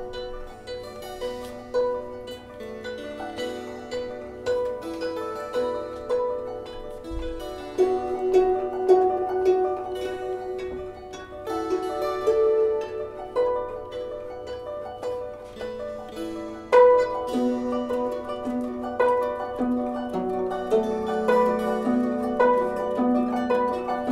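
Improvised music on plucked strings, guzheng (Chinese zither), kantele and mandolin together: many short plucked notes that ring and fade over a changing pattern, with a louder chord about three quarters of the way through.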